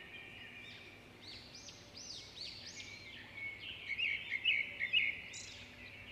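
Birds chirping: a run of short, high calls over a faint steady background, growing louder and quicker a few seconds in.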